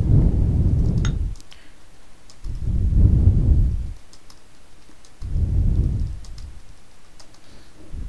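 Computer keyboard keys pressed one at a time at irregular intervals during a touch-typing drill, as light clicks. Three long, low rumbles of about a second each, louder than the clicks, come roughly every two and a half seconds.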